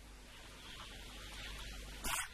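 Faint steady hiss with a low hum underneath, the background noise of a microphone and sound system between phrases of speech, growing slightly louder near the end.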